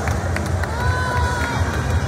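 Swim-meet race noise: splashing from freestyle swimmers mid-race under steady crowd din, with a drawn-out shout from a spectator in the middle.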